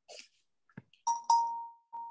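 A bell-like chime: two quick strikes about a quarter-second apart, both on the same ringing tone that dies away over about half a second, then another strike on that tone at the very end. Small faint clicks come before it.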